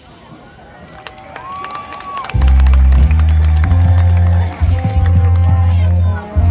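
Marching band performing: after a hush with crowd murmur and one held high note, the band comes in with loud, sustained low chords about two and a half seconds in, with higher held notes above them.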